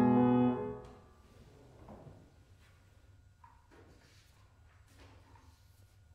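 Grand piano holding a rich sustained chord, released about half a second in and dying away within a second. After that only faint rustles and small knocks of paper being handled at a music stand.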